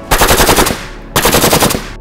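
Assault rifle firing two bursts of automatic fire, each a rapid string of shots lasting well under a second, with a short gap between them.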